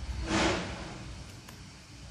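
A single brief soft swish, about half a second long, as a hand slides a small plastic game piece over a paper journal page.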